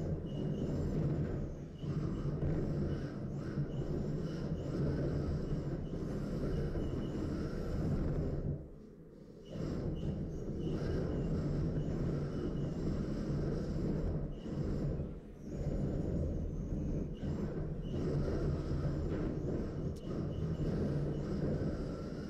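Steady low hum and rumble of combat-robot arena noise as two robots push against each other. It drops away briefly about nine seconds in, then resumes.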